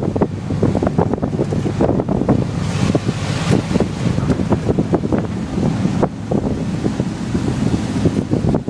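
Wind buffeting the microphone over the low, steady hum of a tuk-tuk (auto-rickshaw) engine while the vehicle drives along, with irregular rumbles and knocks throughout.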